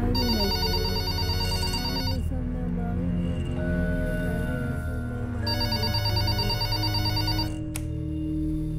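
Landline telephone ringing twice, each ring about two seconds long with a pause of about three seconds between, over background music.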